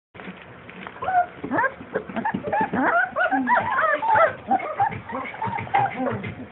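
Four-week-old basset hound puppy whining and yelping, a rapid run of short high cries that start about a second in and keep going.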